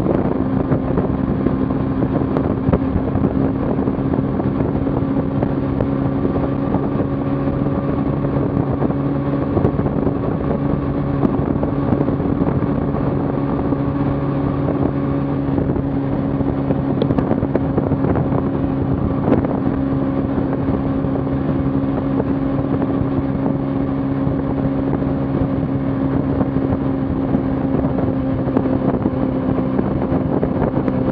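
Kawasaki Ninja 300's parallel-twin engine at a steady cruise, its drone holding one pitch throughout, with wind rushing over the bike-mounted microphone.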